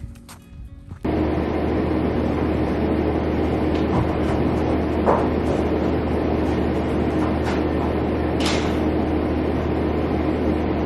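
A steady machine-like drone with a constant low hum starts abruptly about a second in and holds level, with a few faint knocks over it.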